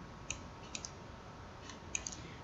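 A few faint, sharp computer mouse clicks spread unevenly over two seconds, as numbers are handwritten on screen, over low background hiss.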